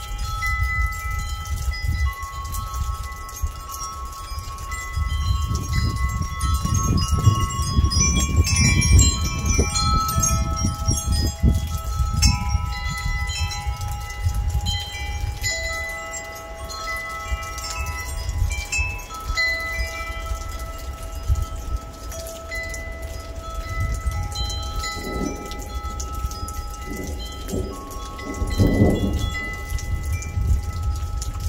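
Wind chimes ringing, several sustained tones overlapping and changing as they are struck, over the steady hiss of rain. A low rumble of thunder swells during the first half, and there is a louder swell near the end.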